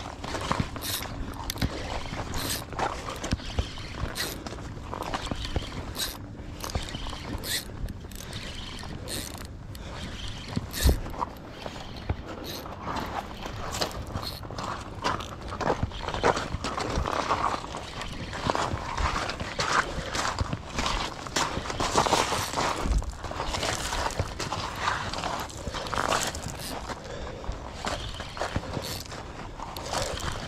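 Daiwa Saltist 10000 spinning reel being cranked hard, its gears whirring and clicking continuously as line is wound in against a hooked striped bass.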